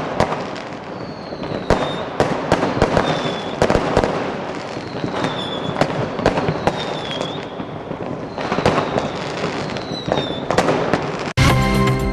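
Fireworks going off: a run of sharp bangs and crackling, with several short falling whistles. The fireworks cut off abruptly near the end as a music jingle starts.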